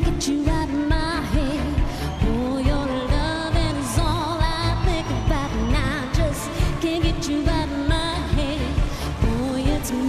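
A woman singing a pop song live over an electronic dance-pop backing track with a steady beat.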